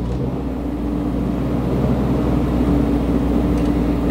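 Kohler 10 kW four-cylinder marine generator set running steadily, with the manhole ventilation blower just switched on low and drawing power from it. The engine takes up the load and surges a little as it settles.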